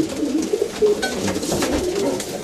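Racing pigeons cooing in their loft.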